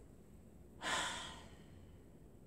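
A single audible breath from a woman, a sigh-like rush of air that starts sharply a little before one second in and fades away within about a second, in a quiet room.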